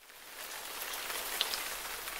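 Heavy rain falling on trees and grass, a steady hiss that fades in over the first half second, with a few sharper drop ticks in the middle.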